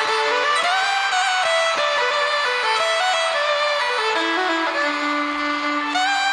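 Fiddle playing a quick, stepping melody with backing instruments, settling on a long held low note near the end.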